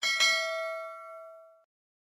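A bell-like metallic chime, struck twice in quick succession and ringing for about a second and a half before it is cut off abruptly.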